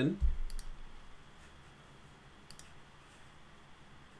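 Two computer mouse clicks about two seconds apart, each a quick double tick of press and release, over faint room hiss, after a short low thump at the very start.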